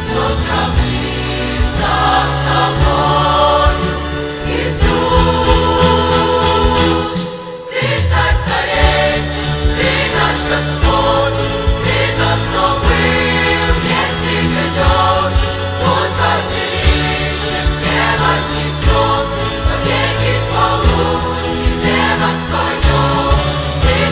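Mixed youth choir singing a Russian-language worship song with a church orchestra of strings, saxophones and trombone. The sound thins briefly about seven seconds in, then the full choir and orchestra come back in.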